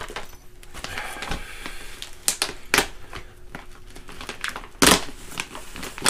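Paper gift bag and tissue paper rustling and crinkling as a present is unwrapped, with a few sharp crackles, the loudest near the end.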